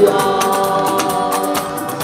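A woman singing held notes into a handheld microphone, with other voices and a quick percussion beat behind her.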